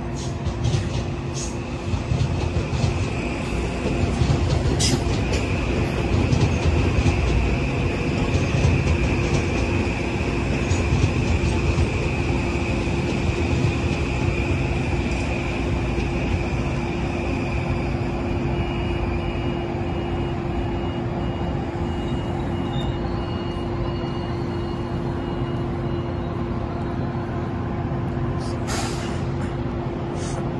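Kawasaki M8 electric multiple-unit train standing at the platform, its onboard equipment running with a steady hum over a low rumble. A faint, regularly repeating beep sounds for several seconds past the middle.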